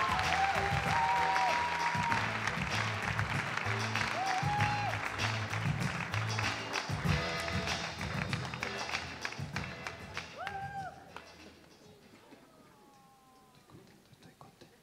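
Audience applauding over walk-on music; the applause and music die away about eleven seconds in.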